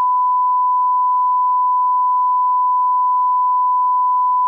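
Electronic 1 kHz sine test tone, a single pure pitch held at a constant level with no change.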